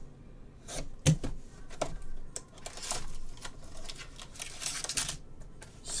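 Hands handling and opening a cardboard trading-card box: a sharp click about a second in, then short bursts of rustling and scraping of cardboard and foil wrapping.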